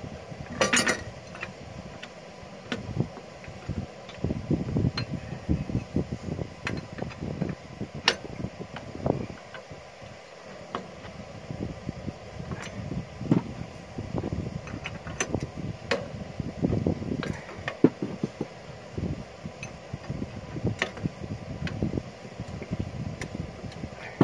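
A 15/16 wrench turning a nut on a bolt of a steel lawn-tractor hitch bracket: irregular metal clicks and clinks as the nut is snugged down, with a louder clatter about a second in.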